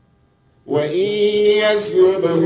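A brief near-silent pause, then about two-thirds of a second in a man's voice begins chanting a Quranic recitation into a microphone, in long, held melodic notes.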